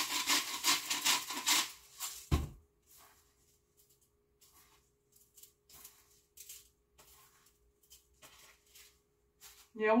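Rapid rasping, grinding strokes as salt is worked into a measuring spoon by hand; they stop about a second and a half in. A single low thump follows, then a few small clicks of handling on the counter.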